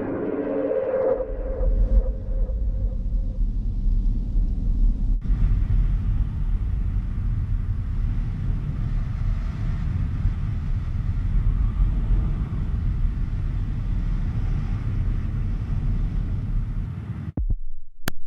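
Deep, steady low rumble. A ringing tone fades out over the first few seconds, the rumble turns fuller and noisier after an abrupt change about five seconds in, and it cuts off suddenly near the end.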